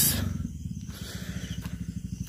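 A motorcycle engine idling with a steady, rapid low pulse, about ten beats a second.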